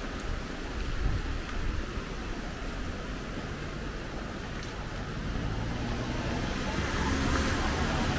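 A small pickup truck's engine approaching from behind and passing close on wet pavement, growing louder through the second half. Low wind buffeting on the microphone underneath.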